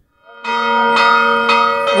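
Church bells ringing, struck about twice a second and starting after a brief silence.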